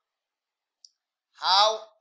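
Near silence with a single faint click just under a second in, then a voice speaking a word near the end.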